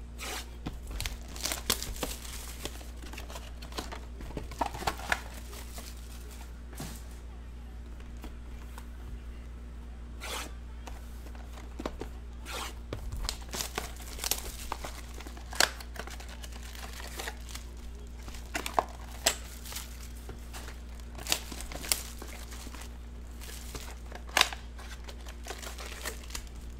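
Plastic shrink wrap and foil trading-card packs being torn open and handled, crinkling in short rips with scattered sharp crackles. A steady low hum runs underneath.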